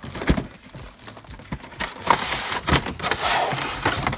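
Handling of a cardboard collection box and its plastic tray: several light knocks and taps, with rustling from about two seconds in to near the end.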